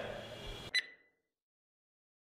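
Faint room tone, then a single short click with a brief high ring about three-quarters of a second in, followed by dead silence.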